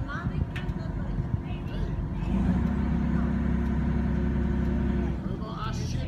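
An engine running with a steady low hum. It grows louder and steadier for about three seconds in the middle, then drops back.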